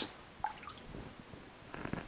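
Faint drips and trickle of acid draining out of a hollow aluminium tube, blocked at one end, as it is lifted from the anodising bath and tipped. A couple of small drips about half a second in, with a little more liquid noise near the end.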